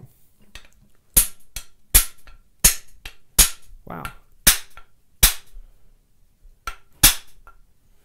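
About ten sharp taps of a metal hammer on a wooden skew rabbet plane, roughly one every half second with a short pause near the end, knocking the iron and wedge to adjust the cut.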